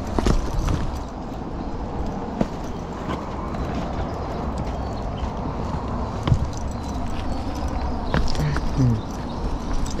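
Hikers' footsteps scuffing and knocking on a rocky dirt trail, with a few sharper knocks among them over a steady low rumble.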